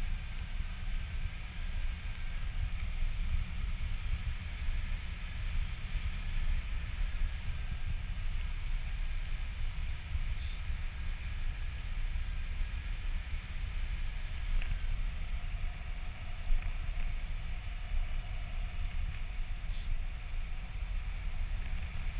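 Rushing airflow of paraglider flight buffeting an action camera's microphone: a steady, heavy low rumble with no break.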